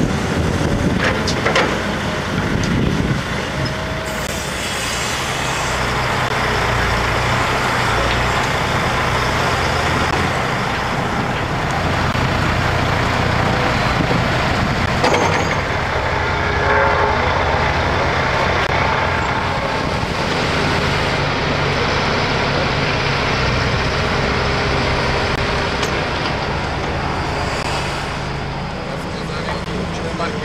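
Diesel engines of a tracked excavator and a dump truck running steadily under load while earth is moved, a continuous low drone.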